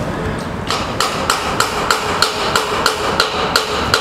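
Hammer blows in a steady rhythm, about three sharp strikes a second, beginning about a second in, over steady street background noise.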